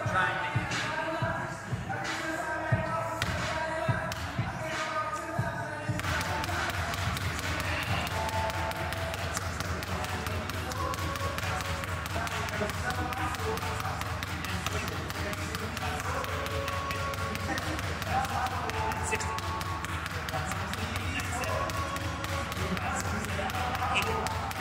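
A basketball dribbled low and fast on a hardwood court floor: a rapid, even run of bounces during a timed dribbling drill, starting about six seconds in, with background music over it.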